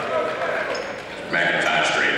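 Live sound of a basketball game in a gymnasium: voices of players and spectators calling out in the echoing hall, with a ball being dribbled on the hardwood floor. The voices get louder about a second and a half in.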